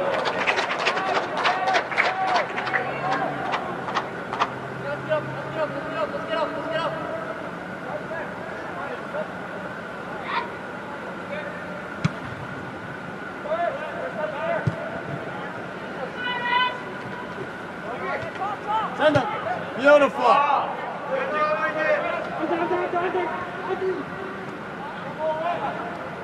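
Scattered shouts and calls from soccer players and people on the sideline, over a faint steady hum. A quick run of sharp taps comes in the first few seconds, and the loudest shouts come about three-quarters of the way through.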